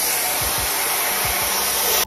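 TYMO AirHype Lite hair dryer running on its highest airflow setting: a steady, loud rush of air, with a few brief low thumps.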